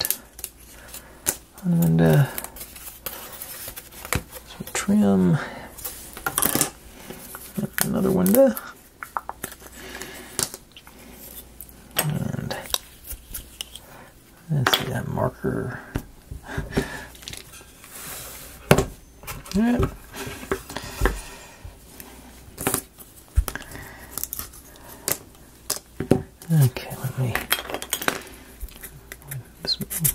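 Irregular light clicks, taps and clatters of small hard parts and tools being handled and set down on a worktable while a wooden model kit is assembled, with a man muttering briefly several times between them.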